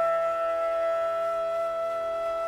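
Bansuri (Indian bamboo flute) in a raga, holding one long steady note that slowly fades, over a low steady drone.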